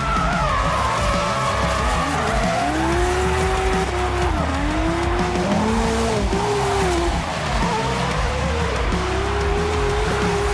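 Drift car's engine revving up and down as it slides, its pitch rising and falling every second or two, with tyre skid noise throughout.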